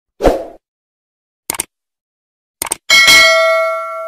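Subscribe-button animation sound effects: a soft pop, a click about a second and a half in, and a quick double click. These are followed about three seconds in by a bright notification-bell ding that rings out and slowly fades.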